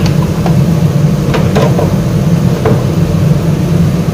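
Wok of kailan, shrimp and chilies simmering in a little water on a stovetop, under a steady low hum from the stove area, with a few light clicks about a second into the stretch and again near three seconds.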